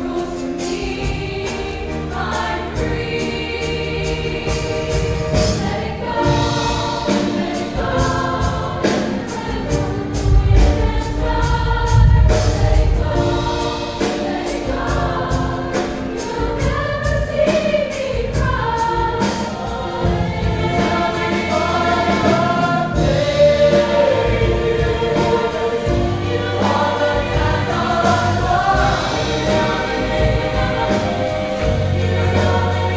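High school choir singing, many voices together.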